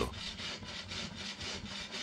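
Hand bow saw cutting through a birch log, the blade rasping back and forth through the wood.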